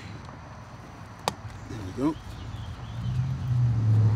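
A single sharp click as the upper vent screw on the lower unit of a Tohatsu MFS20 outboard is worked loose to drain the gear oil. A low steady motor hum comes up near the end.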